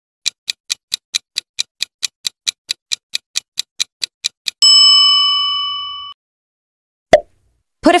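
Countdown-timer sound effect: a clock ticking about five times a second for about four seconds, then a bell ding that rings out and fades over about a second and a half. It signals that the time for the question is up. A single short pop follows near the end.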